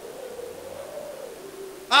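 A pause in speech, with only a faint steady hum and hiss through the public-address system. Just before the end a man exclaims a loud "ah" into a microphone.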